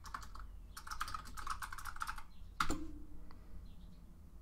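Typing on a computer keyboard: a quick run of keystrokes for about two seconds, then one louder keystroke a little later.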